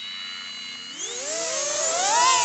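Brushless motors of a 3-inch Pygmy Rattler cinewhoop FPV drone idling armed with a thin high whine. About halfway through they spool up in a rising whine as the drone lifts off the sand.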